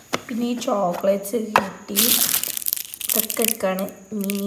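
Wrapped sweets and plastic packaging crinkling as they are handled, loudest in a burst about two seconds in, while a woman's voice talks over it.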